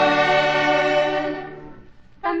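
A choir holds the long final chord of a Christmas carol, which fades away to almost nothing near the end.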